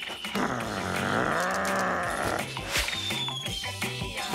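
A cartoon dog's drawn-out vocal cry lasting about two seconds, its pitch dipping and then rising again, over background music. A thin falling whistle follows near the end.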